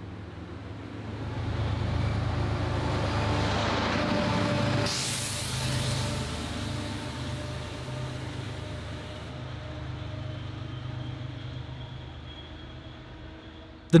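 An MBTA push-pull commuter train passing close by: the coaches roll past with wheel and track noise, loudest a few seconds in. Under this runs the steady hum of the MPI HSP46 diesel-electric locomotive pushing at the rear, and the sound fades slowly toward the end.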